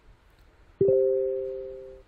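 An electronic notification chime: two notes sounding together, struck suddenly just under a second in and fading away slowly.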